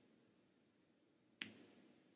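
A single sharp click of a snooker cue ball striking an object ball, about one and a half seconds in, with a short fading tail against near silence.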